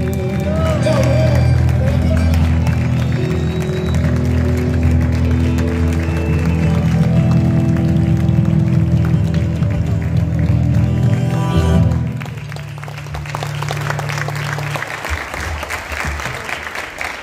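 A live acoustic trio of acoustic guitar, bandoneon and cajón holds the closing chords of a song, which end about twelve seconds in; audience applause follows.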